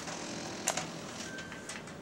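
Quiet handling noise from a PA system handset and its equipment rack as the handset is lifted for an announcement: one sharp click under a second in, a few fainter ticks, over low room hiss.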